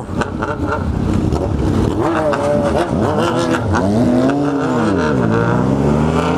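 Motorcycle engine pulling away and accelerating, its pitch rising and falling a couple of times with the throttle and gear changes.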